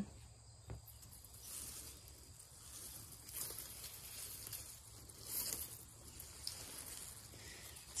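Faint outdoor background: a steady high drone of insects, with a few soft swells of rustling noise and a single light tick about a second in.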